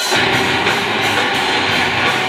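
Live rock band playing loud, led by electric guitar, coming back in at full volume right at the start after a brief dip.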